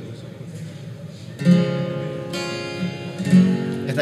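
Acoustic guitar strumming chords that ring on, starting about a second and a half in with further strums after it: the opening of a song's introduction.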